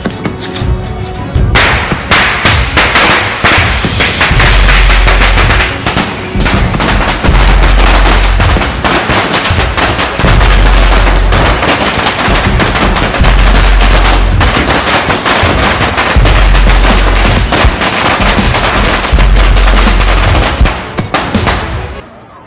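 A string of firecrackers bursting in a fast, continuous run of bangs. It starts about a second and a half in and carries on nearly to the end, over music with a heavy bass pulse.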